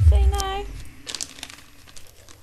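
A low thump right at the start, overlapped by a short held voice sound, then crinkling of wrapping paper a little after a second as a dog paws and tears at a gift-wrapped treat packet.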